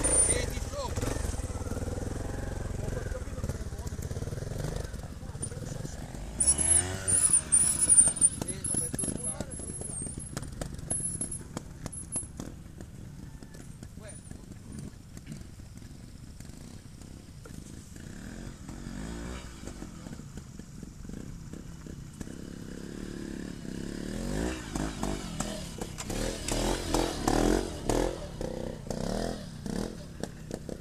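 Trials motorcycle engine revving in short bursts, loudest about six to eight seconds in and again near the end, running quieter in between.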